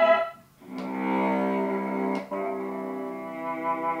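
Guitar music played through the ViewSonic VP3268 monitor's built-in speakers. It drops almost to silence just after the start and comes back in about a second in, with a couple of faint clicks.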